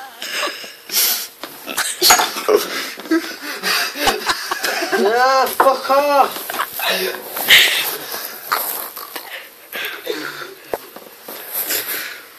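People laughing breathlessly and trying to stifle it, with wheezy gasps of laughter and two high squealing rises and falls about five and six seconds in.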